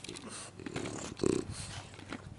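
A dog making short, irregular vocal sounds.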